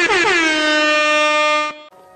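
Air horn meme sound effect: a rapid run of short blasts, then one long held blast that cuts off abruptly near the end.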